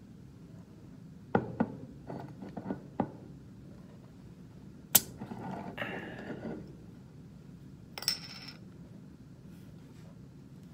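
A glass soda bottle knocking and clinking on a hard surface. There is a run of small clicks and knocks, then a sharp clink about five seconds in, and a higher ringing glassy clink near eight seconds.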